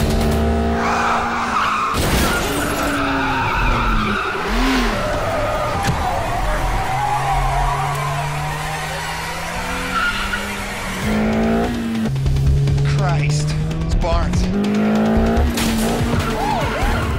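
Car-chase sound effects over a film score: car engines revving, their pitch climbing slowly and dropping, tyres squealing, and a police siren wailing.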